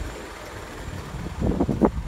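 Low rumble of wind on the microphone, with a short, louder burst of sound near the end.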